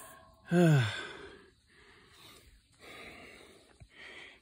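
A man's short sigh-like vocal sound, falling in pitch, about half a second in, followed by faint breathy noise.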